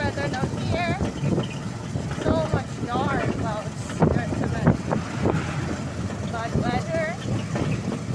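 Engine and road noise of a moving open vehicle, with a busy low rattle, and wind buffeting the microphone. A wavering, voice-like sound rises and falls several times over it.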